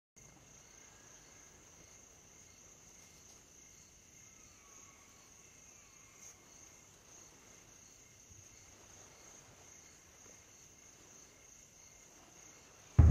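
Near silence: a faint, steady, high-pitched trill of night insects.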